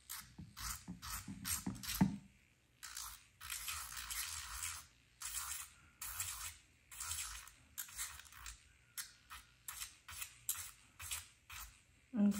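Electric nail drill with a sanding-band bit grinding a clear plastic full-cover gel nail tip. It comes as repeated short scratchy strokes, quick ones at first and then longer ones of about half a second to a second each, as the tip is filed down to fit a wider nail bed.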